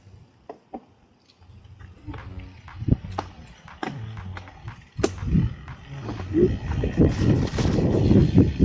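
Mountain bike rolling down a rough dirt trail: tyre noise with scattered knocks and rattles of the bike over roots and bumps, starting quietly with a few clicks and getting louder from about five seconds in.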